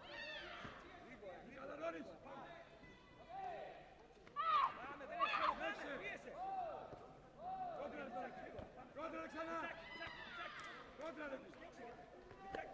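Several people shouting short, rising-and-falling calls over one another, loudest about four to six seconds in.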